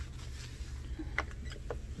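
Damp microfiber cloth wiping a light switch and its plastic wall plate, with a few faint small clicks about a second in and near the end, over a steady low rumble.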